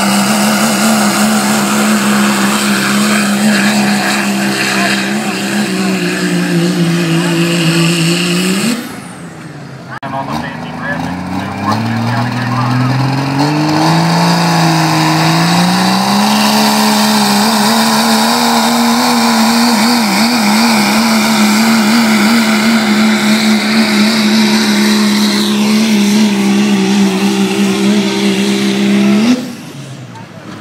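Diesel pickup trucks at full throttle pulling a weight-transfer sled, one engine note holding steady before breaking off about nine seconds in. A second truck's engine, a second-generation Dodge Ram's Cummins inline-six, then climbs in pitch from low, settles and holds steady at full power until it breaks off near the end.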